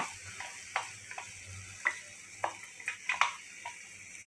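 A wooden spatula tapping and scraping inside a steel mixer-grinder jar as ground paste is knocked out into the pan, giving about six sharp, irregular taps over a faint sizzle of tomatoes frying in oil.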